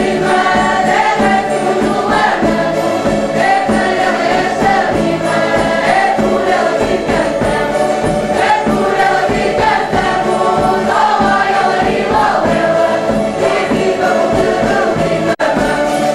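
Portuguese folk group singing in chorus to strummed cavaquinhos and a bass drum, a lively steady song. The sound drops out for an instant near the end.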